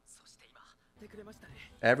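Quiet, faint speech for most of the time, then a loud voice starts just before the end.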